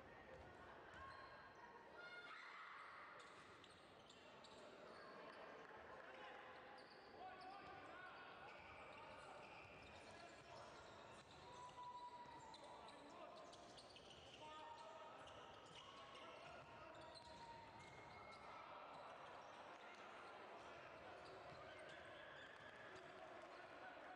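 Faint basketball game sound in a sports hall: a ball bouncing on the court among scattered voices of players and spectators, with short knocks and a few brief high squeaks or calls.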